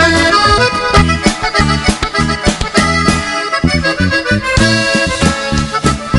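Live norteño band playing the instrumental opening of a corrido. An accordion leads the melody over bass, guitar and drums in a steady rhythm.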